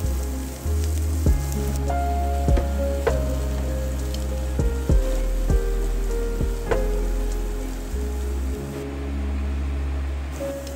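Chopped onion and garlic sizzling in oil in a nonstick frying pan, with sharp clicks and scrapes as a silicone spatula stirs them against the pan. Background music with steady bass notes plays throughout.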